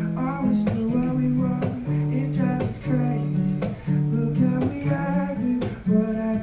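Acoustic guitar strummed in chords, with a man singing into the microphone over it.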